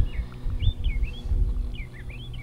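A bird chirping, a quick series of short rising-and-falling notes, over a low rumble and a faint steady hum.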